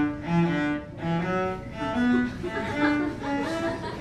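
A cello bowed in a short phrase of separate held notes, each about half a second long.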